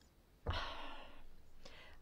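A person's breath close to the microphone: a sudden breathy rush about half a second in that fades away over about a second, taken in a pause in speech.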